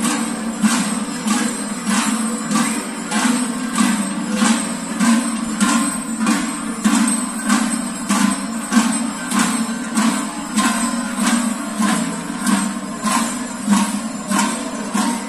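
Many large cowbells (chocalhos) rung together in unison, clanking in a steady beat of a little under two strokes a second.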